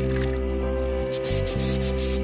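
Background music with held chords over the hiss of an aerosol spray-paint can, the spraying getting louder about a second in.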